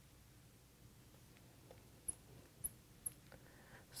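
Near silence: faint room tone with a few short, faint, high squeaks in the second half, typical of a marker drawing on a glass board.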